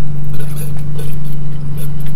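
Water and air sputtering from an open bleed valve as air is bled out of a pump's water line, heard as irregular short spatters and clicks. A loud, steady low hum runs underneath throughout.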